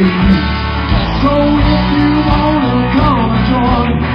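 A live rock band playing at full volume: electric guitars with bending lead lines over a steady bass and drum beat.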